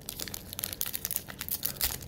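A Magic: The Gathering booster pack's foil wrapper being torn open by hand, crinkling with a rapid run of crackles.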